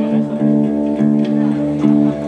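A live band's electric guitars and bass guitar playing sustained chords that change about every half second, between sung lines.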